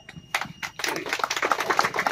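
A crowd clapping: a few scattered claps at first, then applause that fills in about a second in.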